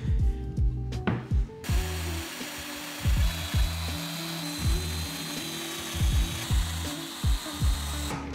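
Festool Domino DF 500 joiner with a 5 mm cutter starting about a second and a half in and running steadily, with a faint high whine, as it plunge-cuts mortises into plywood. Background music with a steady beat plays underneath.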